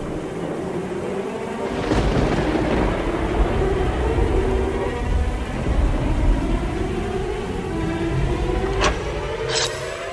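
Background music made of sustained low tones, with a deep rumble that comes in about two seconds in and a couple of sharp hits near the end.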